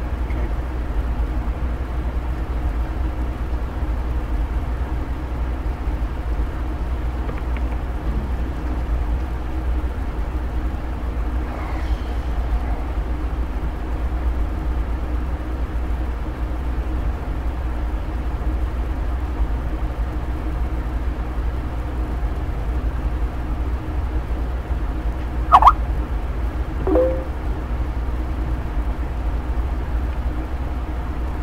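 Steady low hum with faint steady tones above it on an otherwise silent broadcast feed: dead air during technical difficulties on a live show. A short, sharp loud blip with a brief tone comes about 25 seconds in, followed a second later by a smaller one.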